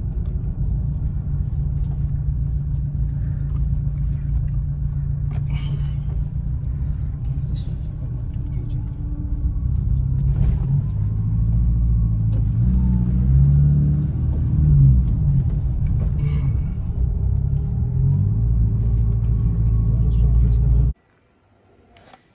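Car engine and road noise heard from inside the cabin while driving on a winding hill road: a steady low rumble whose pitch rises and falls through the middle as the engine speed changes, with a few brief knocks. It cuts off about a second before the end.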